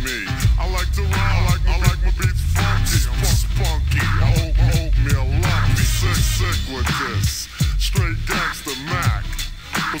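Slowed-down, pitched-down 'screwed and chopped' hip-hop track: deep, drawn-out rap vocals over a heavy bass line and beat.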